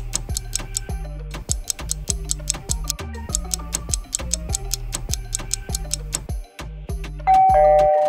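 Countdown music with a steady ticking beat under a puzzle timer. Near the end, a two-note falling chime starts and rings on as the answers are revealed.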